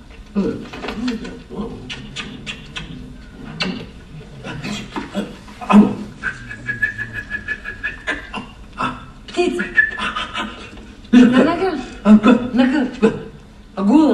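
Film dialogue played over cinema speakers: quiet, broken-up voices. About six seconds in, a steady high tone lasts about two seconds.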